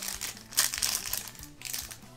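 Foil wrapper of a Pharaoh's Servant Yu-Gi-Oh booster pack crinkling irregularly as it is pulled open by hand, with faint background music.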